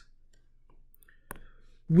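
A quiet pause with a single sharp click about a second and a quarter in, and a few fainter ticks around it.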